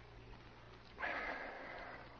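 A man's sharp, breathy exhale after swallowing a drink. It starts about a second in and trails off.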